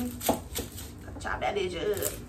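Chef's knife slicing through a red onion on a cutting board: a few sharp knocks of the blade on the board, mostly in the first half-second and again at the end.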